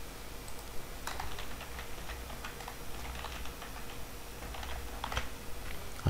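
Computer keyboard typing: a run of quick key clicks starting about a second in and stopping shortly before the end, as text is entered into form fields.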